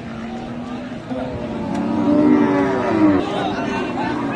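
Cattle lowing: a long, drawn-out moo from about a second in until just past three seconds, loudest near the end, over a background of crowd voices.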